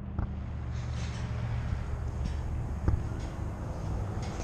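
A steady low mechanical hum under faint background noise, with a single light click about three seconds in.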